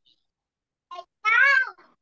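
A cat meowing once, a high call of about half a second that rises and falls in pitch, just after a brief short sound about a second in.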